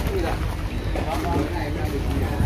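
Wind buffeting the microphone, a steady low rumble, under indistinct background talk.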